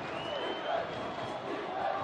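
Stadium crowd noise at a college football game, a steady din of many voices. Near the start, a single whistled tone rises in pitch and then holds for about a second.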